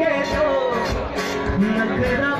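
Live band music played loud through the stage sound system: a male voice singing over guitar and a steady drum beat.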